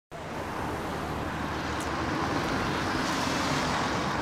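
Steady road traffic noise: cars driving along a street.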